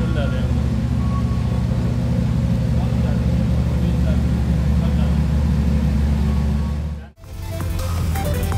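Ferrari LaFerrari Aperta's V12 idling steadily with a low, even tone. About seven seconds in the sound cuts out abruptly and music begins.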